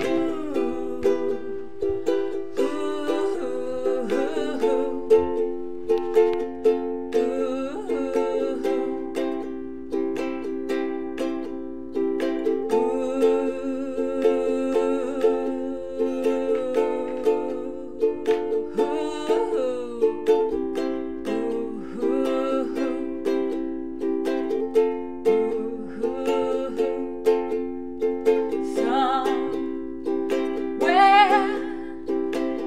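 A ukulele strummed in a steady rhythm, its chords changing every few seconds, with a woman's singing voice over it at times.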